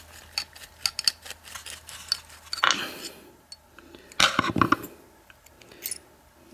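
Small metal clicks and clinks as an American 5360 padlock is taken apart with a screwdriver, with louder clatters of metal parts about two and a half and four seconds in.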